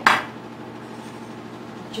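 One sharp knock against a glass kitchen bowl at the very start, then only faint room hum.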